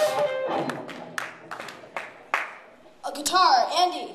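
Audience clapping and cheering that thin out to a few scattered claps over the first two seconds or so, then a short burst of voice near the end.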